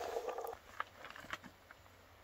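A steady whine that cuts off about half a second in, then a few light clicks and knocks as a fat-tire e-bike is pushed up a steep dirt trail.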